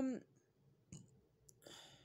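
A drawn-out "um" trails off, then tarot cards are handled quietly: a couple of faint clicks and a short soft rustle near the end.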